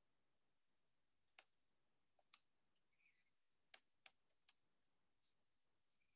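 Very faint computer keyboard keystrokes typing a short line of text: about a dozen separate clicks at an irregular pace, starting about a second and a half in.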